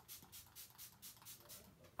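Faint, quick spritzing of a MAC Prep + Prime Fix+ pump-spray mister as setting spray is misted over a face.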